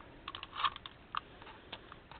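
Hands handling paper on a journal page: light taps and paper rustles, a quick cluster of small clicks in the first second and a couple of single ones later.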